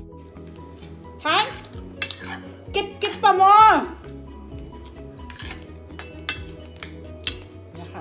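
A metal spoon clinks against a plate and bowl several times, over quiet background music. A few seconds in comes a loud, wavering pitched sound that falls in pitch, like a voice.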